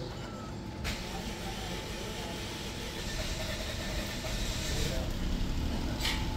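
Toyota Passo's engine being cranked at length by the starter before it catches, the long start because the fuel pump and fuel lines were left empty by the work. The whirring sets in about a second in and grows louder toward the end.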